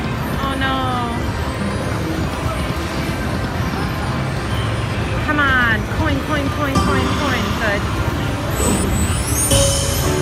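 Rising Fortunes slot machine's electronic sound effects during free spins: short chiming tones and falling glides as the reels spin and stop, with a brighter chime near the end as a coin symbol lands. Underneath is the steady din of a casino floor, chatter and other machines.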